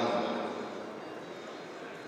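A voice over the sports hall's loudspeakers fading out in the first moments, leaving the hall's low steady background murmur.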